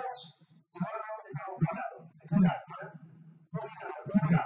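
Only speech: a man talking into a handheld microphone over a sound system, with a low steady hum beneath.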